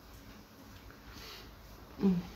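Quiet small-room tone in a pause of speech, with a soft, short breath a little past a second in.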